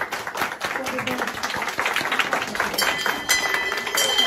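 A group of people clapping in a rapid patter, then a small wall-mounted end-of-treatment bell is rung near the end, its clear ring lingering over the applause.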